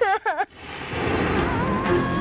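A brief wailing cry in the first half second, then dramatic background music swells up, with a held, wavering note.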